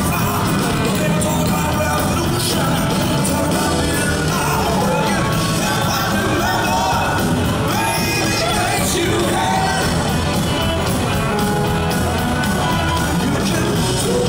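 Live rock band performing: a man singing lead over electric guitars and drums, heard from the audience in a large hall.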